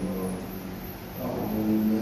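A man chanting the Islamic call to prayer (adhan) over the mosque's loudspeaker, in long, held melodic phrases. One phrase ends at the start, there is a short breath, and the next long note begins a little past halfway.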